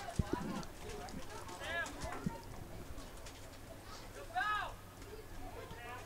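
Distant shouts from soccer players and coaches on the field: two long calls, one about two seconds in and one after four seconds, with a few faint knocks near the start.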